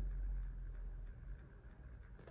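A pause in speech: quiet room tone with a faint, steady low hum.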